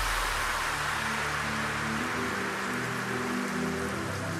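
Electronic dance music in a beatless breakdown: a wash of white-noise hiss over held synth chords that change about halfway through.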